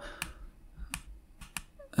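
Computer keyboard keystrokes: about five separate, spaced-out clicks as a line of code is edited.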